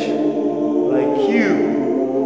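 A cappella gospel vocal group singing in harmony: a chord held under a lead voice that slides up and down in pitch about a second in.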